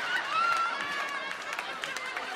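Comedy audience reacting to a punchline: voices laughing and calling out, with a few scattered claps.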